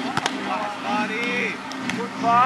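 Voices of people calling and talking, short and broken up, with a couple of brief sharp clicks near the start and near the end.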